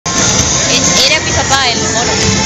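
A person's voice close to the microphone over loud parade music and crowd noise.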